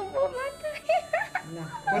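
Young puppy whimpering in several short, high squeaks.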